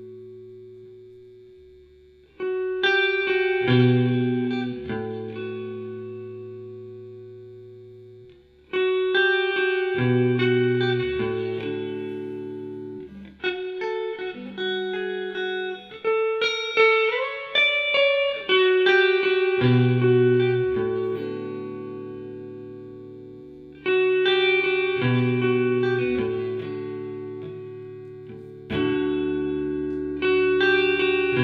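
Electric guitar played through a pedalboard of effects into an amplifier: chords struck about every five or six seconds and left to ring out and fade, over a steady held tone. A busier run of notes comes in the middle.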